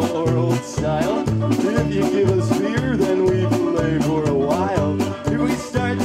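Cleveland-style polka band playing live: accordion, saxophones, banjo and drum kit over a bouncing bass line, with a steady quick beat.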